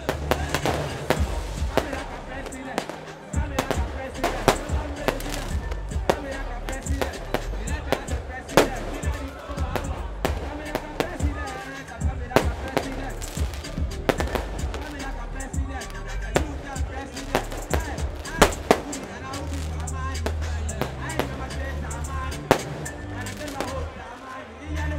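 Fireworks cracking and popping irregularly, many sharp reports in quick succession, over loud concert music with heavy bass and a voice over the PA.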